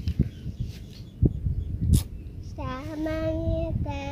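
A few low knocks and one sharp click, then a child's voice holding a long, drawn-out sung note over the last second and a half, stepping once in pitch.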